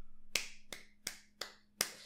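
A man clapping his hands: five sharp, evenly spaced claps, a little over two a second.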